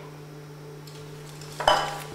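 Tableware clinking twice near the end, a sharp clink followed by a smaller one, over a steady low hum in a quiet hall.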